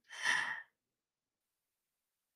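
A person's short breathy exhale, like a sigh, about half a second long at the very start.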